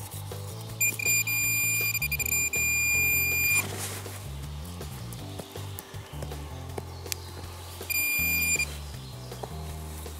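A metal detector's steady high electronic tone sounds in two stretches, about three seconds near the start and a short burst near 8 s, signalling metal in the freshly dug hole. A slow bass line of background music runs underneath.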